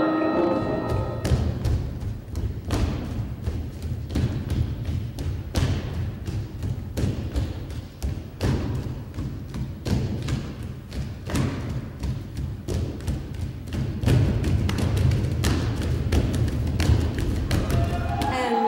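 Electronic dance score: a steady low drone under irregular thuds and clicks, several a second. Held sung tones fade out in the first second, and the sound grows a little louder near the end.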